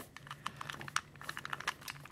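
A 2x2 puzzle cube being turned in the hands: a quick, irregular run of faint plastic clicks and rattles as its layers move.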